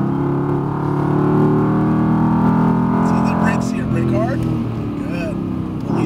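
Mercedes-AMG GT R's twin-turbo V8 heard from inside the cabin, running steadily under throttle, its note easing off a little about three and a half seconds in.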